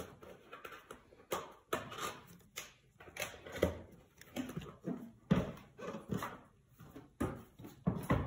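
Irregular soft clicks and knocks from a plastic tube of thermal paste being squeezed and pressed against a CPU's heat spreader, about one or two a second.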